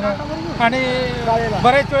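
A man's voice talking, with one long drawn-out syllable in the middle.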